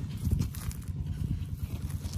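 Light clicks and scrapes of stones and gravel being handled on the ground, over a steady low rumble.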